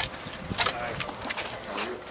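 Handheld camera handling noise: the camera brushes and knocks against the holder's clothing as he walks, giving a rustling bed with several sharp clicks, and faint voices in the background.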